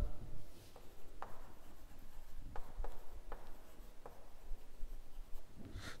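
Chalk writing on a blackboard: faint scraping with a few sharp taps of the chalk against the board as words are written out.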